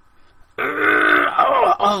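A man's strained, drawn-out groan of effort, about a second long, starting about half a second in, made while straining to push a heavy shopping cart; a spoken 'Oh' follows near the end.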